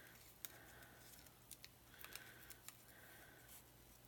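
Near silence, with a few faint, short ticks from fingers handling a thin die-cut paper snowflake and picking its cut-out pieces free.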